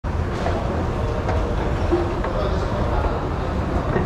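Steady low rumble of a moving escalator heard while riding it, with faint indistinct voices in the background.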